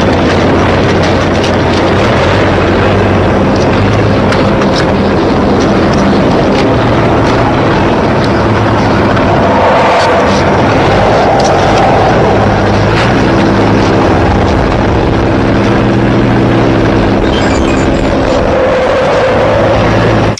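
Loud, continuous roaring rumble of a film's disaster-scene soundtrack, vehicle-like, with a low steady drone joining in the second half.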